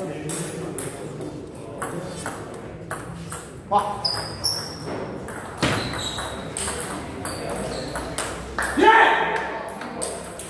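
Table tennis rally: the ball clicks back and forth in quick sharp taps off the bats and the table. Near the end a player lets out a loud shout.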